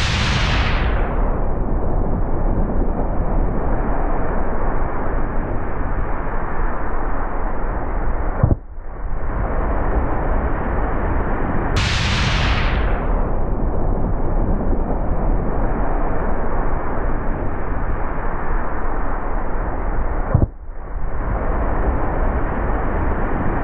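Loud, rumbling wind buffeting and water rush on an action camera's microphone as a wakeboard carves across the water behind a cable. The noise is steady and muffled, dropping out briefly twice.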